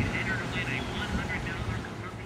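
Faint background voices over a steady low hum, slowly fading toward the end.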